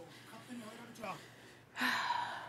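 A person gasping: a sudden, breathy intake of breath near the end, after a stretch of faint, quiet speech.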